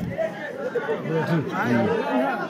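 Speech: men talking into a handheld microphone, with a background of chatter.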